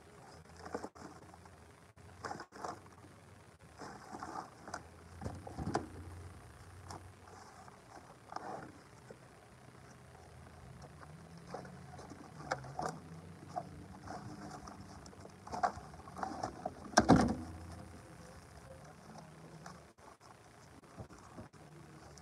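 Potting soil poured from a bag and worked in by hand around a potted tree: scattered rustling, scraping and soft knocks, with one louder thump about seventeen seconds in.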